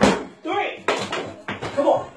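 A rubber medicine ball slammed onto a concrete floor, one loud impact at the start, followed by two fainter knocks as it bounces.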